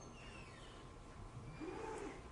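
Quiet room tone with a faint steady low hum, and a faint brief indistinct sound in the last half second.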